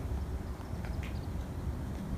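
Quiet outdoor background: a low, steady rumble with two faint clicks about a second in.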